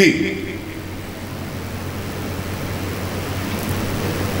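A man's word ends through a public-address system, followed by a pause filled with steady background noise and a low hum.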